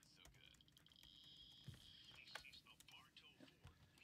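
Near silence: room tone with a few faint clicks and faint, low voices.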